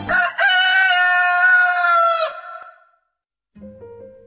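A rooster crowing once: a short opening note, then a long, high call that falls slightly in pitch and stops abruptly after about two seconds. Faint instrumental music begins softly near the end.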